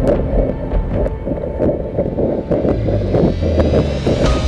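Wind buffeting a camera carried by a running marathoner, with regular jolts about three a second in step with his stride, mixed with background music. A low steady drone comes in near the end.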